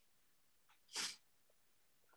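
Near silence over a video-call microphone, broken about a second in by a single short, breathy burst from a person, like a quick puff of breath.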